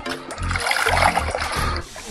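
Background music with steady low notes, over water splashing and trickling as a green mesh fish keepnet is pulled through shallow water.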